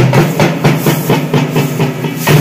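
Several large double-headed drums beaten with sticks in a fast, loud, driving rhythm, over a low held tone.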